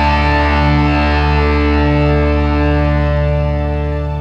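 Blues-rock recording: a single distorted electric guitar chord, struck just before and held ringing with a steady bass beneath, slowly fading near the end.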